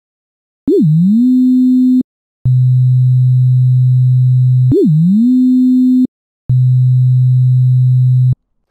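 Pure sine-wave tones from a Renoise sampler instrument, played twice in the same pattern. Each note opens with a quick pitch blip up and down, shaped by a pitch envelope, then glides up and holds for about a second. After a short gap a lower steady tone holds for about two seconds.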